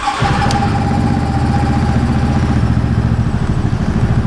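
A 2009 Yamaha Rhino 700's single-cylinder engine starts, catching right at the beginning, and settles into a steady, evenly pulsing idle. It is the first run after a stator replacement.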